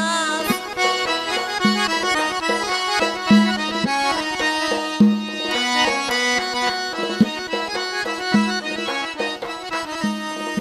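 Instrumental break in Khorezm xalfa folk music: an accordion plays the melody in held chords over a steady beat of low doira (frame drum) strokes, while the singer's voice drops out between sung lines.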